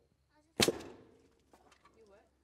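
Pneumatic nail gun firing once, about half a second in: a sharp crack as a nail is driven into lumber, dying away quickly.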